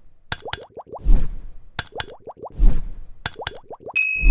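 Cartoon-style sound effects for an animated on-screen Like button. Three times, about a second and a half apart, a pair of sharp clicks is followed by a quick run of falling pitch slides and a low thump. A bell-like ding starts right at the end.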